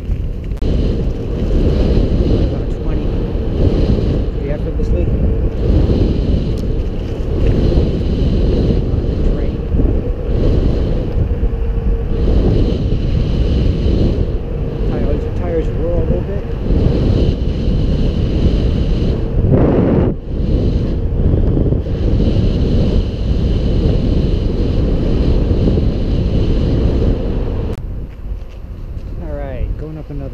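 Wind buffeting the microphone of a camera on a moving e-bike, with tyre rumble on pavement and a steady faint whine under it; a sharper gust hits about twenty seconds in.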